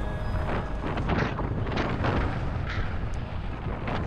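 Wind buffeting the microphone of a camera riding on a mountain bike descending a rough dirt singletrack, with irregular surges and short knocks and rattles from the tyres and bike over the bumpy trail.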